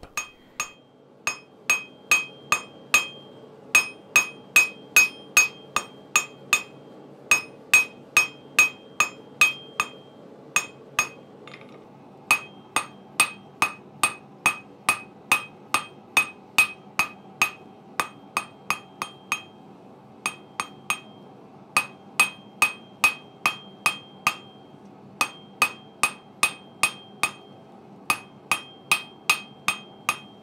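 Hand hammer forging hot mild steel bar on a small 30 kg Acciaio anvil, drawing out a taper: runs of blows at about three a second with short pauses between them. Each blow leaves a bright ring from the anvil, over a steady low background noise.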